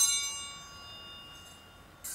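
A small bell, likely an altar bell, rung once with a sudden bright strike; its high metallic ringing fades away over about two seconds.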